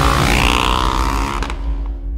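Husqvarna Svartpilen 701's single-cylinder engine revving, rising in pitch, over music. Most of the sound drops away about one and a half seconds in.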